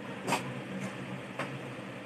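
A steady low mechanical hum fills the background, broken by two brief soft noises, the first and loudest about a third of a second in and the second about a second and a half in.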